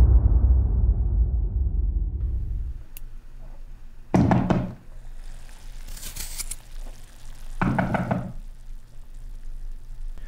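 A deep boom dying away over the first three seconds, then two short bouts of knocking on a door, about four and eight seconds in.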